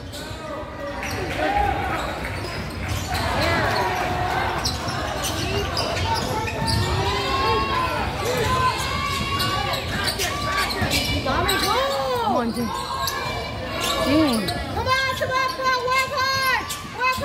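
Basketball dribbling on a hardwood gym floor, with sneakers squeaking and voices shouting, all echoing in a large gymnasium. The sharpest squeaks come about twelve to fourteen seconds in.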